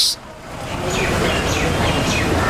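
Outdoor vehicle ambience: a steady low engine rumble and road noise that swells up about half a second in and then holds, with faint short high calls above it.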